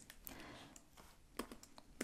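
Faint computer keyboard typing: a few soft keystrokes, the clearest about one and a half seconds in.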